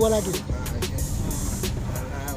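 Inside a moving bus: steady engine and road rumble under music with a beat, with a man's voice briefly at the start.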